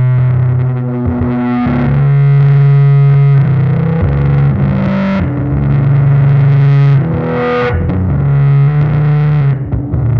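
Electric bass guitar played through distortion and effects, holding sustained low droning notes that shift to a new pitch every second or two.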